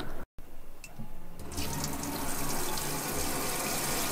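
Kitchen tap running into a deep stainless-steel sink, the water coming on about a second and a half in and then flowing steadily.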